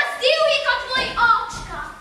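A child's high voice in short phrases, some notes drawn out, fading away near the end.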